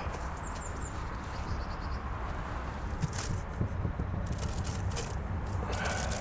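Soft handling noises and a few light knocks as a felt insulation blanket is pulled out of a wooden beehive, over a steady low background rumble. A bird chirps three times near the start.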